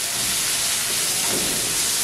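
Whole spices (mustard, cumin, fennel and nigella seeds) sizzling in hot oil in a pan as a tempering: a steady hiss.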